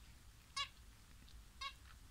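Zebra finch giving two short nasal calls about a second apart.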